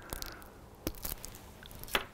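Chocolate being bitten to break a piece off, with a few sharp snaps, the loudest near the end.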